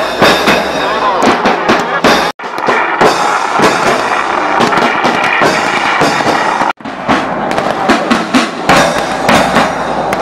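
A rapid, dense string of firecracker bangs mixed with a marching band's drums and crowd voices. The sound breaks off sharply twice, at cuts.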